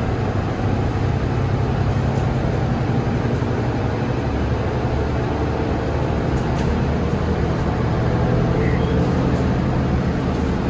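Mercedes-Benz Citaro city bus heard from inside the cabin on the move: a steady diesel engine hum with road noise, swelling slightly twice, and a few faint rattles.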